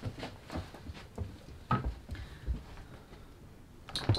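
Soft, irregular knocks and clothing rustle from a person moving about a room while putting on a denim jacket, mostly in the first couple of seconds.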